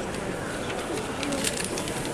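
Street ambience of people talking, with a quick run of light clicks and rustles about a second and a half in.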